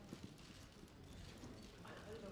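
Near silence: quiet room tone with a few faint, soft knocks like footsteps on the floor.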